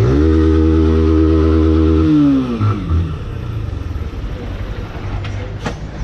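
Honda 160 motorcycle's single-cylinder engine held at steady revs, then the revs fall away over about a second as the bike rolls off and slows, settling to a quieter low running sound.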